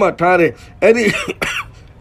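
Speech only: a man preaching in a sermon.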